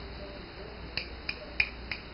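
Four quick finger snaps, about three a second, made close to a puppy.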